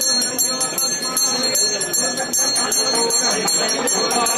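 Temple bell rung rapidly and continuously during the puja, a fast even series of bright metallic strikes over a murmur of voices.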